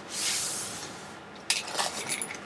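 Hands sliding and rubbing over the plastic film of a rolled diamond-painting canvas: a soft rustling hiss that fades out. Near the end come a few sharp crinkling clicks.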